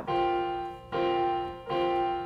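A C7sus4 chord (C, F, G, B-flat) played on piano three times, at the start, about a second in and near the end, each time held and left to ring.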